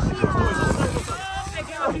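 Voices talking and calling out, over a steady low rumble.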